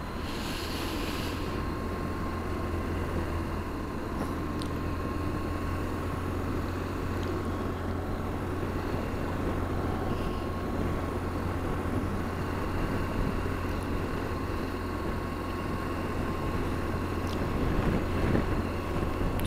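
BMW R1200GSA boxer-twin engine running steadily at an easy pace on a dirt road, mixed with wind and road noise. A brief hiss comes in the first second or so.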